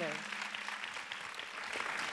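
Audience applauding, the clapping easing off slightly toward the end.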